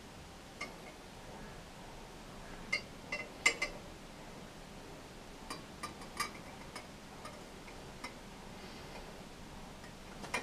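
Light, scattered ticks and clinks of glassware as water is poured slowly down the inside of a glass graduated cylinder, with no steady sound of running water. The loudest cluster of clinks comes about three and a half seconds in.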